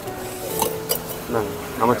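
Two light metallic clinks of steel serving vessels being handled, about half a second apart, followed by a man's brief speech, over faint steady background music.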